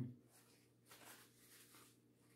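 Near silence with faint, soft noises of a person eating, after a hummed 'mm-hmm' trails off at the very start.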